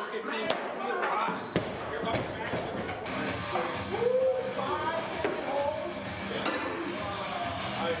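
A loaded barbell with bumper plates dropped onto a lifting platform, landing with a thud and bouncing, about half a second in and again a second later. Background music with voices follows.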